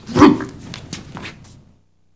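A man's short, loud shout or grunt, followed by a few quick slaps and knocks over the next second, dying away before the end.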